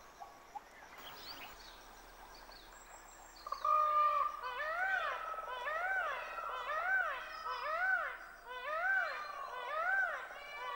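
Male Indian peafowl (peacock) giving its territorial call: after a few quiet seconds, a run of about eight loud cries, each rising then falling in pitch, a little more than one a second.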